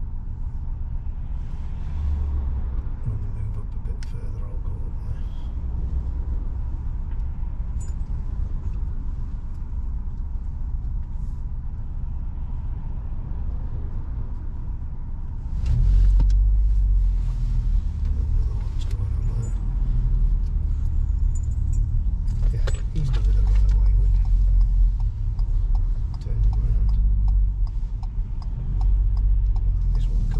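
Car cabin noise: the engine and tyre rumble of a car. It gets louder about halfway through as the car moves off, with a few clicks and rattles.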